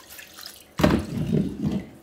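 Degreaser sloshing and running off a steel brake backing plate as it is swished in and lifted out of a plastic tub of the liquid. It starts suddenly under a second in and dies away with dripping.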